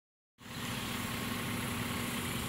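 Steady hum of an engine running, with a low rumble, starting about half a second in.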